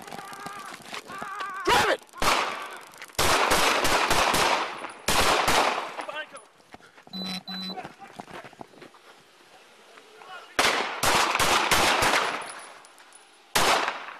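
Gunshots in rapid volleys in an exchange of fire with police: a quick burst a few seconds in, another shortly after, a longer burst near the end, and one last shot just before the end.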